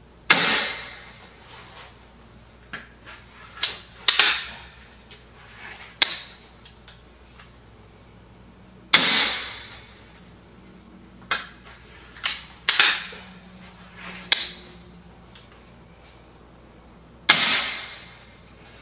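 A magazine-fed repeating pistol crossbow is fired again and again at close range. About seven sharp snaps of the string releasing come a few seconds apart, each dying away quickly, with lighter clicks of the mechanism in between.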